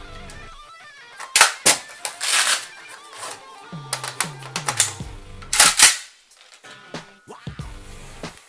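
Saiga-12 shotgun's box magazine being changed one-handed: sharp metal-and-plastic clacks with a brief rasp about one and a half to two and a half seconds in, then two loud clacks a little before six seconds as the fresh magazine is rocked and locked in. Guitar music plays underneath.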